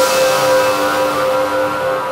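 Electronic logo jingle: a held synthesizer chord of several steady tones ringing out and slowly fading.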